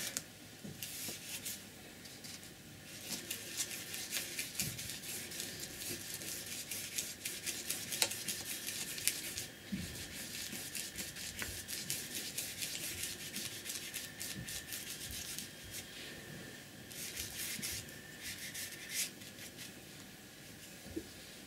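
Flat paintbrush brushing paint across thick paper in quick repeated back-and-forth strokes, a soft dry scratching. It goes on for about the first half, eases off, then comes back with a short run of strokes near the end.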